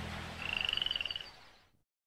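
The low tail of the music fades out. Then a short, high-pitched, rapidly pulsing trill sounds for about a second, an animal call like a small frog's.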